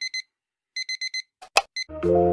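Digital alarm clock beeping in quick groups of short high beeps, four to a group. A sharp knock comes about one and a half seconds in, followed by a single further beep.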